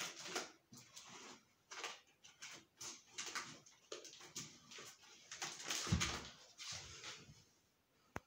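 Scissors cutting and scraping through packing tape and cardboard on a long shipping box, in a run of irregular short strokes, with a dull knock about six seconds in.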